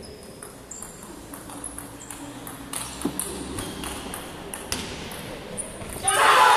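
Table tennis rally: a celluloid or plastic ball clicking off bats and the table in a quick, uneven series of sharp pings that come faster from about halfway through.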